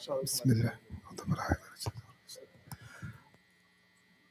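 Quiet, low murmured speech, too soft to make out, dying away to silence a little after three seconds in.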